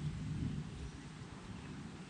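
Faint, steady low rumble of outdoor background noise, a little stronger in the first second, with no distinct event.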